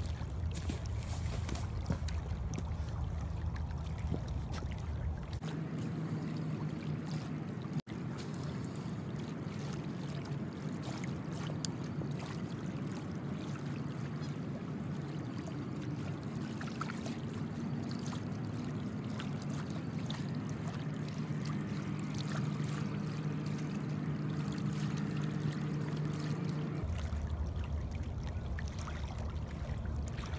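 River water lapping at the bank with wind on the microphone, a steady wash of noise. A low steady hum comes in a few seconds in and stops near the end.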